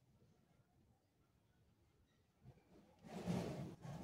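Near silence, then about three seconds in a soft scratchy rubbing of a marker pen writing on a plastic bucket.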